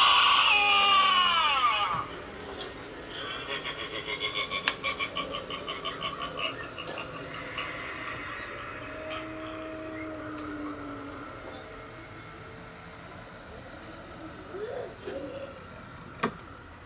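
Halloween animatronic prop sound effects from a speaker: a loud shriek that falls in pitch, then a rapid pulsing sound at about four pulses a second that fades, with faint tones later.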